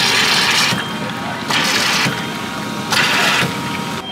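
Carbonated soda pouring from a self-serve soda fountain nozzle into a paper cup in three short spurts, each under a second, as the pour button is pressed and released.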